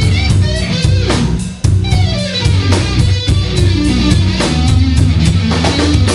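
Live blues-rock band playing: electric guitar lead with bent, gliding notes over bass guitar and drum kit. There is a brief break about a second and a half in, then the band comes back in hard.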